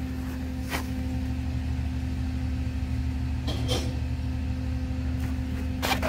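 A steady low mechanical hum holding one constant pitch, with a few short clicks over it.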